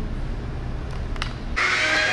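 A steady low hum with a few faint clicks, then background music cuts in suddenly about one and a half seconds in.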